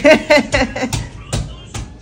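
A man's voice trailing off in the first second, then three sharp knocks or clicks about a third of a second apart.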